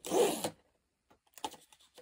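A small cardboard doll blind box being torn open: one short rasping burst of about half a second at the start, then a few faint ticks of the box being handled.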